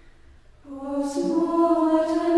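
Unaccompanied choir singing held chords, coming in after a brief pause about half a second in.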